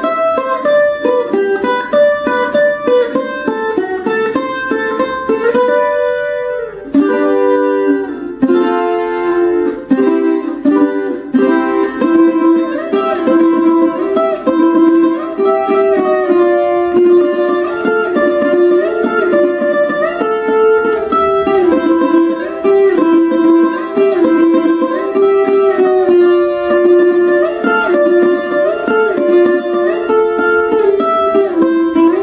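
Colombian requinto, a small steel-strung instrument with twelve strings in four courses of three, picked in a quick, lively instrumental paso doble melody in carranga style, the notes changing rapidly with a brief break about six seconds in.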